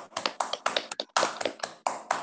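Sparse applause over a video call: a few people clapping their hands, sharp claps at uneven spacing, several a second.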